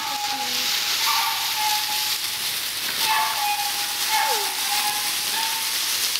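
Dry fallen leaves crackling and rustling as puppies run and tumble through them, with a few short, high calls, some sliding down in pitch.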